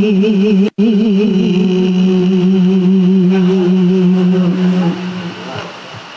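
A woman reciting the Qur'an in melodic tajwid style through a microphone: one long, ornamented held phrase that wavers in pitch and ends about five seconds in. The sound cuts out completely for an instant just under a second in.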